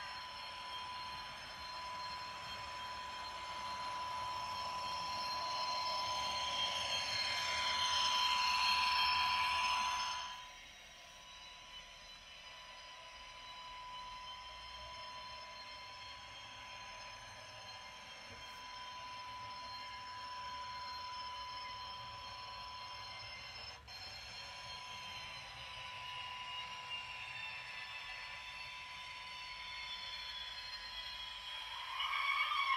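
Electric motor whine of model trains running on a model railway layout, with a steady high tone underneath. The whine swells, then cuts off abruptly about ten seconds in. A quieter, wavering whine follows as a model double-deck push-pull train rolls in.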